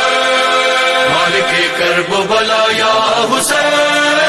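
Muharram devotional chant to Hussain, a DJ mix: voices holding long chanted notes over a steady sustained backing, with a new sung phrase beginning about a second in.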